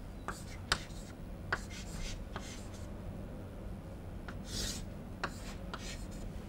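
Chalk writing on a chalkboard: a series of short sharp taps and scratches as symbols are written, with one longer scrape about three-quarters of the way through. A low steady room hum lies beneath.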